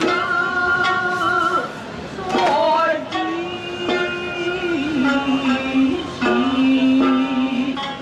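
Traditional Japanese folk music for a dance: a singer holds long notes over plucked strings, and the melody steps down in pitch in the second half.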